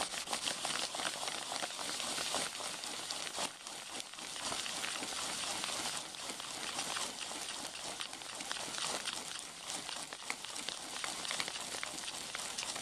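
A paper towel dampened with rubbing alcohol is being rubbed and scrubbed back and forth over a crinkly bag close to the microphone, making a continuous scratchy, crinkling rubbing sound. It is wiping old gasifier tar off the bag.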